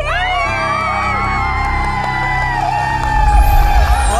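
Game-show music cue with a studio audience whooping and cheering over it, long drawn-out whoops wavering in pitch. About three seconds in, a heavy bass hit and a rising high sweep mark the win.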